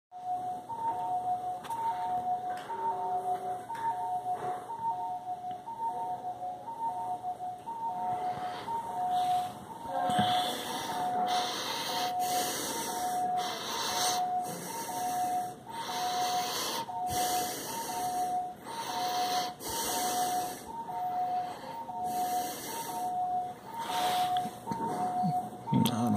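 Hospital bedside equipment alarm beeping steadily: short beeps alternating between a lower and a higher note, repeating evenly. From about the middle on, short bursts of hiss recur roughly once a second alongside it.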